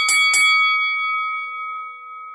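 Bell-like chime sound effect struck a few times in quick succession, then ringing on with a clear tone that slowly fades away.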